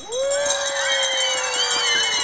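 A crowd of children shouting and cheering, many voices overlapping, with one long held 'aaah' slowly falling in pitch.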